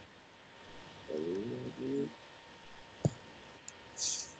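A pigeon cooing, a low two-part coo about a second in, followed by a single sharp click near the end.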